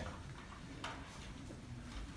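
Quiet room tone in a pause between spoken sentences, with one faint sharp click just under a second in.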